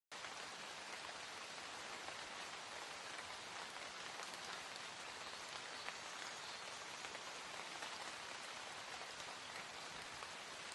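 Steady rain falling on a puddle and wet gravel.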